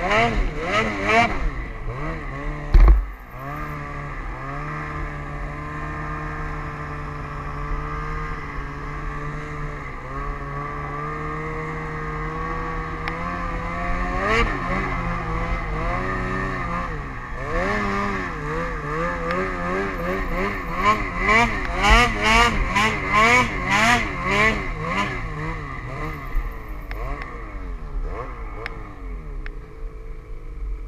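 Ski-Doo snowmobile engine running under way, holding a steady pitch for several seconds, then rising and falling rapidly as the throttle is worked during a climb. A sharp thump about three seconds in, with a low wind rumble on the microphone throughout.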